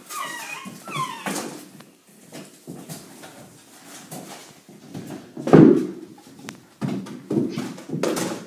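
An animal whining in high, wavering cries over the first second and a half, followed by scattered knocks and thumps, the loudest about five and a half seconds in.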